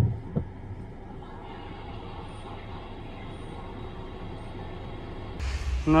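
Steady hum inside a parked car's cabin, with a windshield wiper sweeping the snowy glass and one sharp click less than half a second in. Near the end, wind buffets the microphone outdoors.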